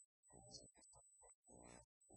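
A man talking at low level, his voice sounding garbled, over a faint steady high-pitched tone.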